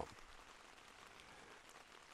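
Light rain falling, heard faintly from inside a tent as a soft, steady hiss.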